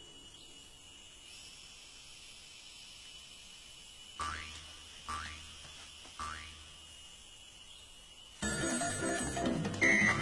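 Quiet ambience with a faint steady high whine. About halfway through, three short calls a second apart each swoop downward in pitch. Near the end, music comes in suddenly and much louder.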